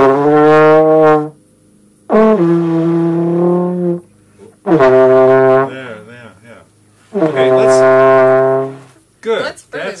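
Trombone played by a beginner: four long, separate notes with short gaps between them. The second note starts with a slight upward scoop in pitch.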